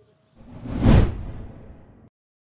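A single whoosh transition sound effect. It swells in about half a second in, is loudest at about one second, then fades away and cuts off at the end.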